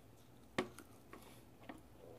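Mouth sounds of someone eating a small bite of food: a sharp lip-smack about half a second in, then two fainter clicks.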